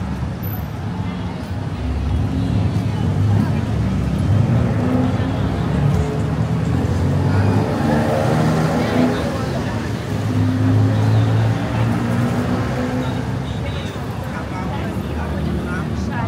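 Busy city street ambience: road traffic, cars, motorbikes and tuk-tuks, running steadily alongside, with passers-by talking nearby.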